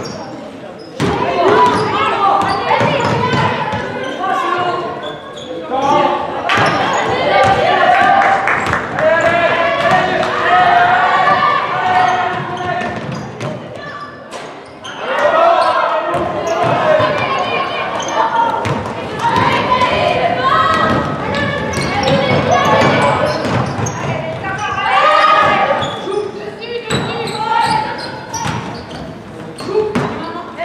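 A basketball bouncing on a hardwood gym floor as it is dribbled, among voices calling out almost continuously, echoing in a large sports hall.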